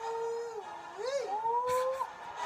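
A person's voice holding long sung or hummed notes. It holds steady, dips, swoops up and down about a second in, then slides slowly upward.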